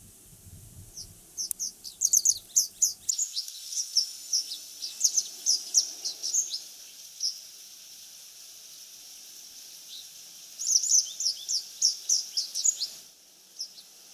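Japanese wagtail singing from a perch: a bout of rapid, high, chirping notes lasting about five seconds, then a second, shorter bout from about ten seconds in. This is the song the species gives from high perches such as antennas in warm weather.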